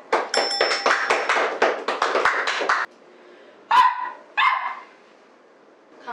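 A man imitating a dog with his mouth: a quick run of wet lapping strokes, like a dog drinking water, for about three seconds, then two short barks in quick succession.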